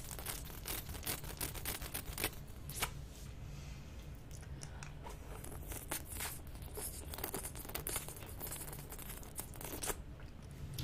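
Close-miked wet licking and sucking on a swirl lollipop: a run of sharp wet clicks and smacks, thinning out for a couple of seconds in the middle before picking up again.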